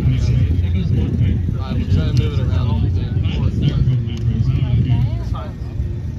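Distant voices of people talking, faint and scattered, over a loud, steady low rumble.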